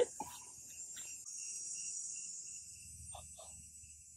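Crickets and other insects calling, faint: a steady high-pitched chorus with a regular chirp pulsing beneath it.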